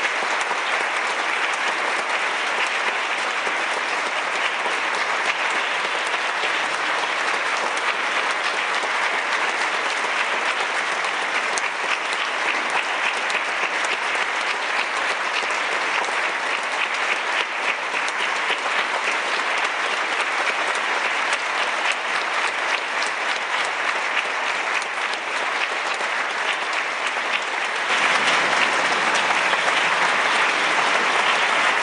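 A large audience applauding, steady dense clapping that grows louder near the end.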